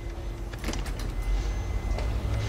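A door opening, with a few sharp latch-like clicks about three-quarters of a second in, over a steady low rumble.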